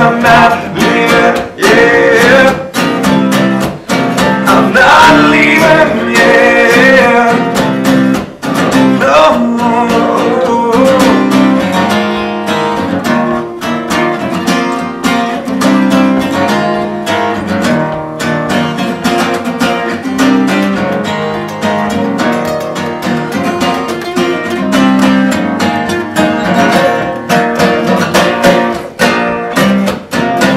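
Two acoustic guitars strummed and picked together in a live acoustic song, with a man's sung melody over them for about the first ten seconds, after which the guitars carry on alone.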